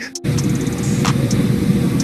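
A loud, dense rushing noise laid over a background music track, starting just after a brief drop-out.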